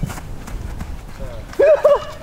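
A man's loud cry in two short rising-and-falling pulses near the end, a reaction to a volleyed shot at the crossbar, over faint footfalls on artificial turf.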